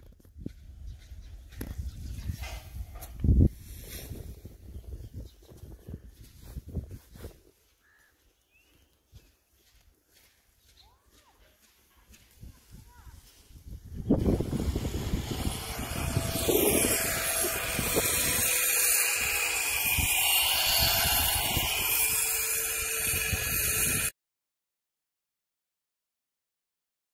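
Outdoor ambience with wind buffeting the microphone, gusty low rumble and scattered knocks, one sharper knock about three seconds in. It goes quiet, then a louder, steady rush of noise sets in from about halfway through and stops suddenly near the end.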